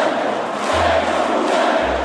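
A large arena crowd cheering, a dense, steady wall of many voices, with low bass notes of background music underneath that change pitch twice.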